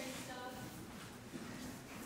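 Faint voices and low murmur in a hall, between louder spoken lines.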